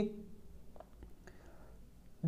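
A man's speaking voice trails off at the start, followed by a quiet pause with only faint breath-like noise and a couple of faint clicks.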